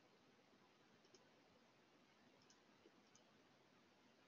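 Near silence with a few faint computer-mouse clicks, one about a second in and a quick cluster of three near the end.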